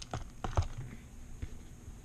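Loose plastic pieces of a disassembled MoYu Weilong GTS3M speed cube clicking and clacking as they are handled: a few light clicks in the first half second or so and one more near the middle.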